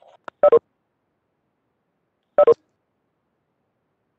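Two short electronic double beeps about two seconds apart, each made of two quick tones, from the Cisco Webex Meetings software's notification chimes.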